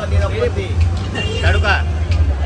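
People talking, with a steady low hum underneath.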